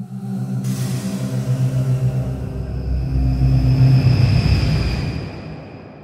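Logo-reveal music sting: a steady deep drone with a swelling whoosh that enters under a second in, builds to a peak about four seconds in, then fades away, leaving a high ringing tone.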